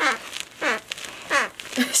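Plush echidna dog toy squeezed three times, its noisemaker giving a funky noise: three falling tones, each gliding down quickly, about two-thirds of a second apart.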